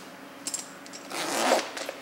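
Heavy-duty zipper on a Husky soft lunch cooler being pulled along in one stroke. A few small clicks from the pull come about half a second in, and the zipping itself is loudest about a second and a half in.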